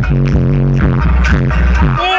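Electronic dance music played loud through a car audio system, with heavy bass from a Fanatics Bass FB1600 12-inch subwoofer in a 110-litre box tuned to 43 Hz, driven by a Taramps 5K amplifier. Short repeating bass notes give way to a long, deep bass note about a second in.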